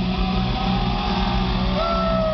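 Amplified rock band heard through the PA: a steady low rumble with a few thin gliding tones above it.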